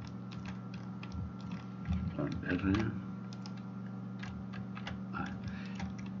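Scattered light clicks of a computer mouse and keyboard being worked, over a steady low electrical hum.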